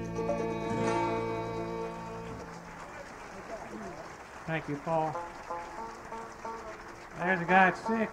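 A live bluegrass string band's final chord rings out and dies away about two and a half seconds in. Audience applause follows, and a man starts talking near the end.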